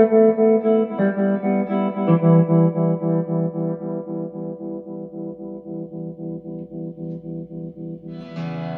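Epiphone Wildkat electric guitar playing a chord through an effects unit, the sound pulsing evenly about five times a second. The chord changes about two seconds in, then rings on, slowly fading and losing its brightness.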